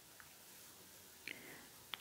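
Near silence: room tone, with a faint short sound about a second and a quarter in.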